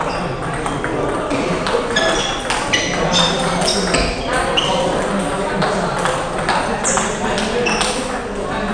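Table tennis balls clicking off bats and tables from several rallies going on at once, irregular and overlapping, over a background of voices.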